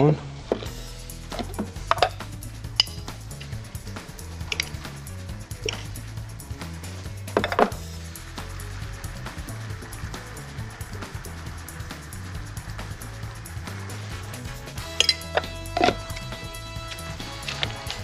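Background music with a steady low beat, with scattered light clicks and knocks of kitchen utensils. Near the end comes a quick run of clicks from a hand-turned pepper mill grinding pepper onto the dish.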